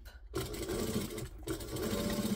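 Mitsubishi LS2-130 sewing machine starting about a third of a second in and stitching steadily through the bag's seam.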